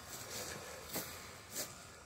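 Faint footsteps on frost-covered grass: three steps at a walking pace, over a light hiss.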